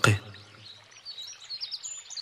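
Faint bird chirping: a few short, high chirps, mostly in the second half, under a lull in the recitation.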